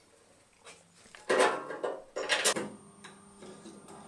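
Metal clatter from a thin sheet-metal cover and hand tools being handled: two loud clanks, about one and a half and two and a half seconds in, with the sheet ringing faintly after the second.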